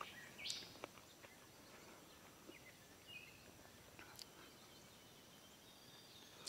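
Near silence: a cherry tomato being chewed with the mouth closed, with only a few faint soft clicks.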